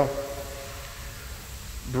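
A pause between a man's spoken words. The echo of his voice dies away at the start, leaving faint, even room noise until speech resumes near the end.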